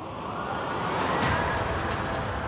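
A rising whoosh transition effect that swells over the programme's theme music and peaks a little over a second in, followed by a few sharp ticks.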